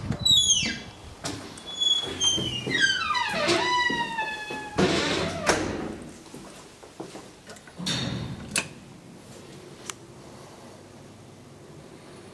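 A swinging door squeaking on its hinges, several long squeals falling in pitch, then heavy door thuds about five and eight seconds in.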